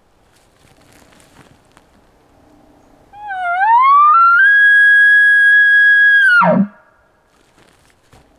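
Locator elk bugle blown on a diaphragm call through a bugle tube: a clear whistle that rises smoothly for about a second, holds steady for about two seconds, then drops off sharply into a short low grunt. It imitates a bull elk announcing where he is.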